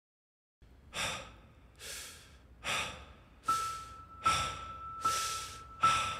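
About seven heavy breaths, evenly spaced under a second apart, opening a song's intro after a moment of dead silence. About halfway a steady high tone comes in under the breathing.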